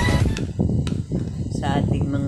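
A metal spoon stirring in a glass jar, with two sharp clinks against the glass in the first second, over low background noise; a voice is heard briefly near the end.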